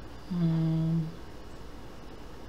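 The narrator's own voice making a single short closed-mouth "hmm" hum at one steady pitch, lasting under a second, starting a little way in. It is a hesitation hum while he works.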